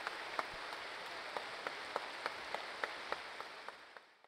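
A large audience clapping steadily, a dense patter of many hands with single sharp claps standing out, fading away near the end.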